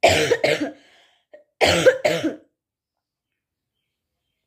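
A woman sick with a viral fever coughing hard into her fist: two coughs, then about a second later a second fit of about three coughs.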